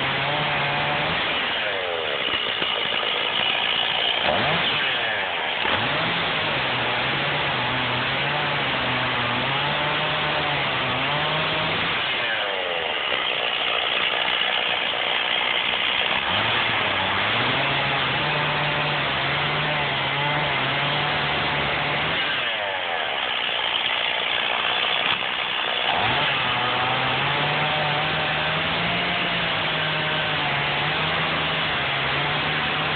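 Stihl two-stroke chainsaw running at high throttle while bucking a log into firewood rounds. Its engine note changes three times, about two, twelve and twenty-three seconds in, as the load on the chain changes.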